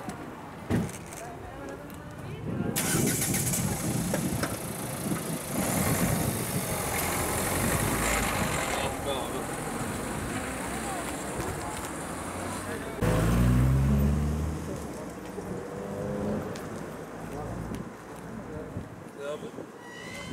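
A van engine running as it pulls away down a street, with indistinct voices and street noise around it. About two-thirds of the way in comes a louder low sound lasting a second or so.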